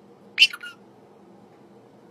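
A cat giving one short, high-pitched chirp-like meow about half a second in, bending in pitch and ending in a brief second note, over faint steady room hum.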